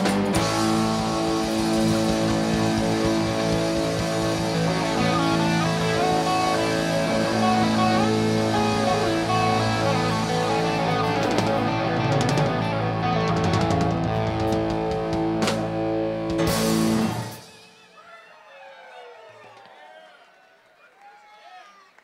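Live rock band (keyboards, electric guitars and drums) playing the drawn-out ending of a song: long held chords with a run of drum and cymbal hits, cut off sharply about seventeen seconds in. After the stop, faint crowd voices and cheering.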